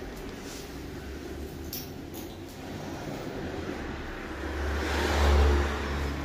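Low rumble of a vehicle passing outside, building about four seconds in, loudest about a second later, then easing off near the end. A few faint ticks come earlier.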